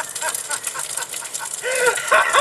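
A man's voice in a rapid run of short, high-pitched cackling cries, fainter at first and louder near the end.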